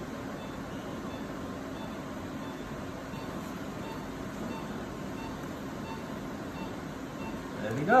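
Steady operating-room equipment hum, with faint short beeps repeating evenly a little faster than once a second.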